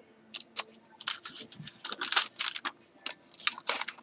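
Paper crafting pieces and their packaging crinkling and rustling as they are handled and slipped back into a bag, a run of short crackles starting about a second in.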